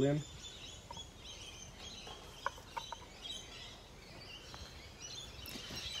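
Birds chirping in the background, a run of short high calls repeated throughout, with a few faint clicks around the middle.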